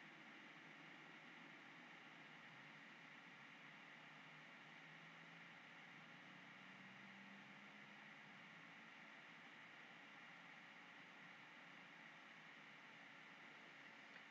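Near silence: faint steady microphone hiss and room tone.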